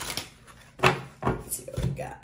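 A deck of tarot cards being shuffled in the hands and knocked against a wooden tabletop: a few short knocks, the loudest a little under a second in.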